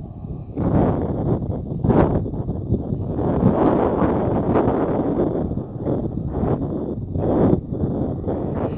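Wind buffeting a Samsung Galaxy Note 8 phone's microphone: a gusty rumble that rises about half a second in and surges up and down.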